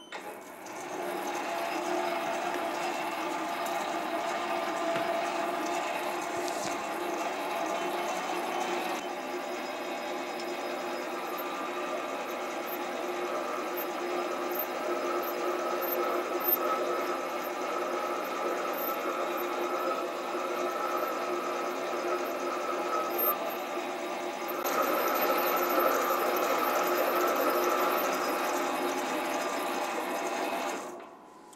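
Sieg SC4 lathe running a boring head through a hole at a few hundred RPM, the cutter taking a steady boring cut under slow hand feed, sped up to four times speed. The motor and cutting sound is steady with a few held tones, changes about nine seconds in and gets louder for the last few seconds.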